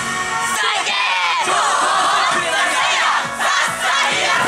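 Many voices shouting together in a long, massed call of the kind yosakoi dancers give during a routine, with pitches sweeping up and down. The backing music's bass drops out about half a second in, leaving the shouting on top.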